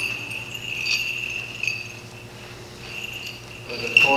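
Small bells on a thurible (censer) jingling as it is swung: a thin, steady high ringing with a fresh jingle about once a second.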